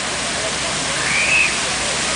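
The Unisphere fountain's water jets spraying and splashing into the pool: a steady rush of water. A faint, brief high call rises and falls about a second in.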